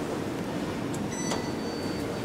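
Steady background hum of an indoor lobby, with a brief high electronic ding just over a second in that lingers as a single high tone: typical of an elevator's hall signal chime.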